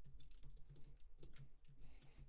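Computer keyboard typing: an irregular run of faint key clicks as a line of code is typed.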